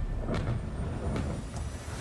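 Steady low outdoor rumble with a couple of faint sharp cracks, about a third of a second in and again just past a second.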